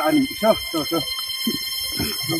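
Men's voices talking quietly, over a steady high-pitched ringing made of several constant tones that never break.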